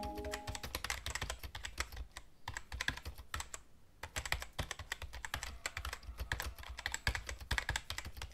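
Typing sound effect: rapid, irregular keyboard key clicks with a couple of short pauses. It runs along with text appearing letter by letter. In the first second the ring of a chime fades out.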